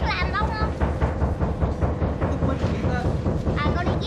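A steady low rumble with short bursts of talk at the start and near the end.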